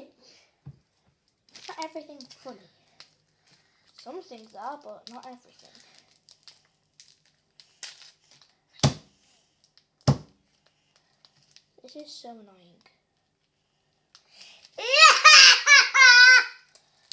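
A small boy laughing loudly and shrilly near the end, after short stretches of quiet talk and two sharp knocks about a second apart.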